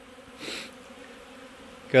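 Honeybees buzzing faintly and steadily around the hive entrance, out on cleansing flights from a colony that has come through winter alive. A brief soft rustle about half a second in.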